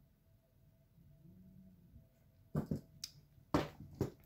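Quiet handling of small jewellery pliers and sterling silver wire, then two sharp clicks near the end as the tool works the wire and is set down on the wooden table.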